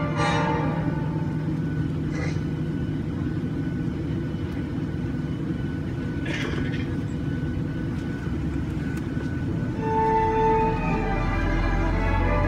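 Steady low rumble of an airliner cabin, with music from the in-flight safety video playing over the cabin audio. The music fades to almost nothing in the middle and comes back strongly about ten seconds in.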